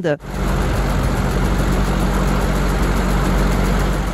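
Vehicle engine idling steadily, a low even hum with a noisy wash over it, starting just after the first moment.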